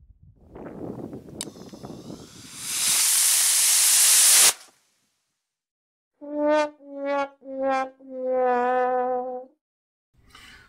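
A loud rushing hiss builds over a low rumble, with a sharp click along the way, and cuts off abruptly. After a moment of dead silence comes a 'sad trombone' sound effect: three short notes and one longer wavering note, each a step lower than the last, marking the test as a failure.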